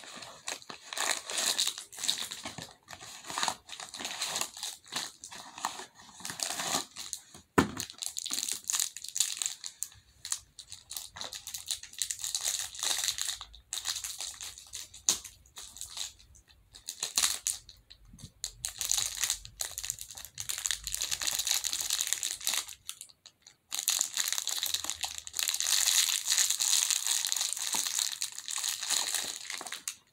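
Stress-ball toy packaging being torn open and crinkled by hand, in irregular bursts of rustling with one sharper crack about seven and a half seconds in.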